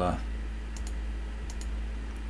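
A few faint computer mouse clicks as a colour is picked from a drop-down menu, over a low steady background hum.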